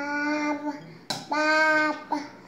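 A toddler vocalizing in sing-song held 'aah' tones: two long, steady notes, each about three-quarters of a second, with a short sharp click between them.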